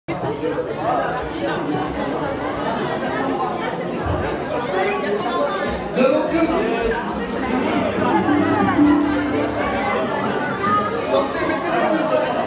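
Many people talking at once in a large room, a steady crowd chatter with music faintly underneath.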